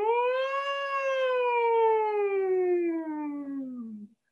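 A woman humming on "mm" with lots of space inside the mouth, as a vocal warm-up: one long hum that glides up in pitch over about the first second, then slides slowly down.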